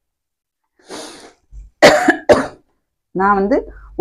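A person coughs twice in quick succession, about half a second apart, after a short breath in.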